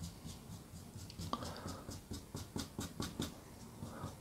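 Brush bristles scratching as thick white oil paint is worked onto canvas: a quick run of faint, short strokes.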